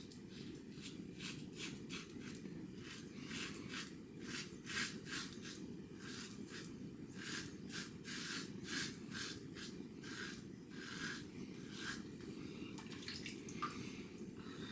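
Above The Tie S2 open-comb double-edge safety razor scraping through lather and stubble, a long run of short strokes at roughly one to two a second, over a steady low background hum.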